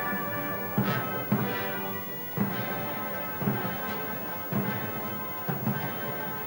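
Military band playing sustained brass chords, with a low drum struck about once a second.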